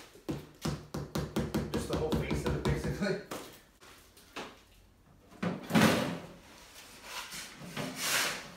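Quick, irregular tapping and knocking on plastic concrete molds for about three seconds, then one loud knock a little more than halfway through.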